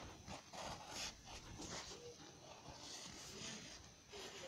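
Faint scratching of a pencil sketching on paper, in short, irregular strokes.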